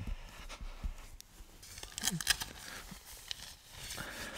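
Nylon tent flysheet rustling and crinkling as it is handled, with a few sharper crackles about halfway through.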